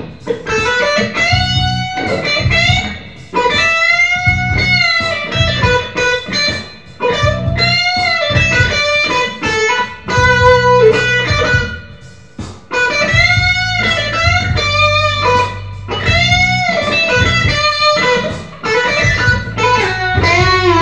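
Ibanez electric guitar playing a slow, melodic lead line of long, sustained notes that are bent up and back down with vibrato. A steady low bass line runs underneath.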